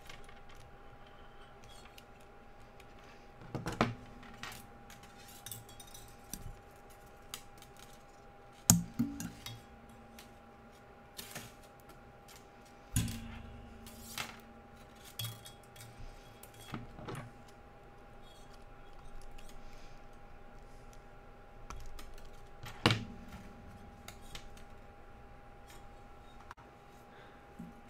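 Sterling silver half-round wire being coiled by hand around a bundle of square silver wires: small metallic clicks, ticks and rustles as the wire is pulled through and wrapped, with a few sharper clinks. A faint steady hum runs underneath.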